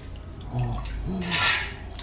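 Liquid splashing and dripping briefly as something is dipped into hot liquid and lifted out, with one short hiss of water about three quarters of the way through. A faint voice is heard beneath it.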